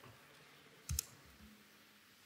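Quiet room tone, broken a little before halfway through by one short, sharp click.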